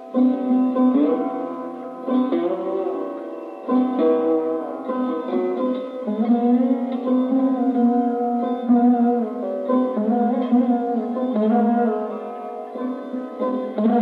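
Sarod playing a raga melody: plucked notes that slide smoothly from pitch to pitch over a steady drone, a new stroke every second or so.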